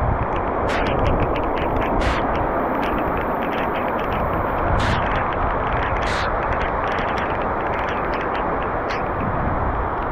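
Heavy rain pouring steadily: a dense hiss with a low rumble underneath, broken by many sharp ticks of drops landing close by.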